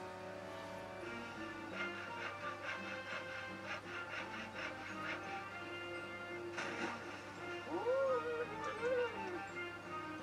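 Cartoon soundtrack playing through the reaction video: light background music, with a run of short rhythmic strokes in the first half and a sharp hit about two-thirds of the way through. Near the end come high, squeaky character vocalizations that bend up and down in pitch.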